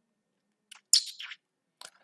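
A short burst of high-pitched chirping about a second in, with a fainter chirp near the end.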